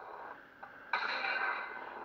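A hiss from the lightsaber's own speaker starts suddenly about a second in and slowly fades, a sound effect from the saber as it enters the font-editing menu.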